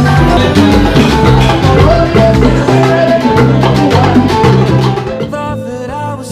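A live salsa band playing: hand drums and percussion drive a steady dance rhythm under bass and melody instruments. The music thins out and gets quieter near the end.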